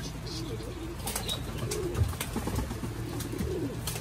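Racing pigeons cooing softly in the loft, low wavering calls repeating throughout, with a few sharp light clicks.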